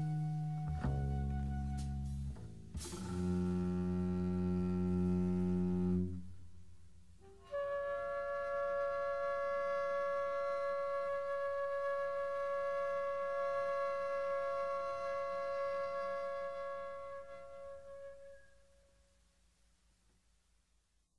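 Free-jazz instrumental music: low sustained notes until about six seconds in, then after a short lull a single long held woodwind note, likely flute, that fades away near the end as the piece closes.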